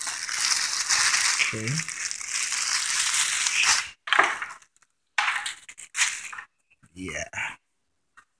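Thin clear plastic wrapping crinkling as it is pulled off a juicer's power cord: a dense, continuous rustle for about four seconds, then a few short rustles.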